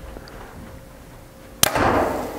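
Bowtech Core SR compound bow, set at 70 pounds draw weight, shot about one and a half seconds in: a single sharp crack from the string and limbs at release, with a brief ring after it.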